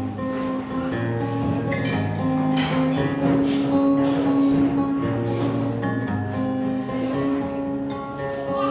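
Steel-string acoustic guitar playing chords in an instrumental passage of a song without vocals, the strummed chords left to ring and changing every second or so.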